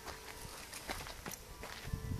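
Footsteps on an outdoor path: a handful of light, separate steps.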